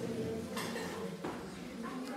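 Faint background voices with two light clicks, one about half a second in and one just past a second.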